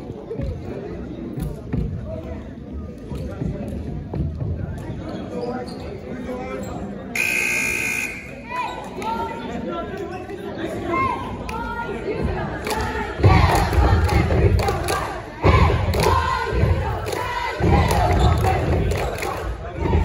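Gym scoreboard buzzer sounding for about a second, about seven seconds in, ending the timeout. Crowd voices and shouting fill the gym, growing loud in bursts from about two-thirds of the way through as play resumes.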